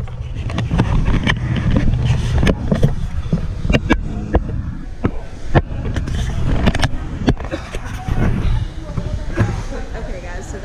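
Low rumble and rubbing from a moving handheld camera, with many small knocks and clicks, over indistinct voices.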